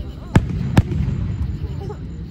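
Aerial fireworks bursting: two sharp bangs about half a second apart.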